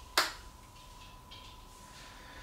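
A single short, sharp click or snap about a quarter of a second in, over a faint steady high tone.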